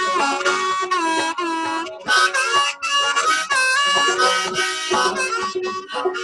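Harmonica played from a neck rack in a melodic instrumental break between sung verses, with some notes bent so they slide in pitch.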